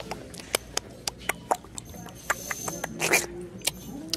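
Sharp, irregular clicks and taps, two or three a second, from someone walking on a hard store floor while carrying a handheld phone camera, with a short rustling burst about three seconds in.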